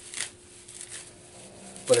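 Dry tulip poplar bark fibers being pulled apart by hand: a short rasping tear about a quarter second in, then fainter rustling of the fibers.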